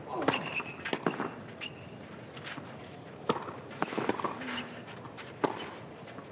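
Tennis rally on a clay court: rackets striking the ball, a sharp pop every second or so, starting with the serve just after the start.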